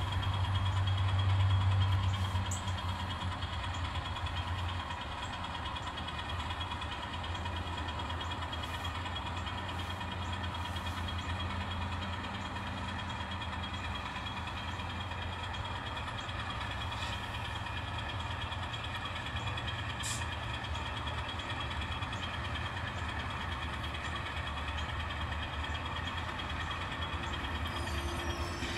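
N-scale diesel switcher locomotive running along the track, its engine sound steady and a little louder during the first two seconds.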